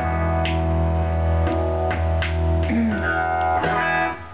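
1997 Gibson Les Paul Double Cut Studio electric guitar played through an amp: chords strummed about seven times and left ringing, with a short bend near the three-second mark. The guitar is being switched through its pickup positions, and the loudness stays even, showing the bridge four-coil humbucker balanced against the neck pickup.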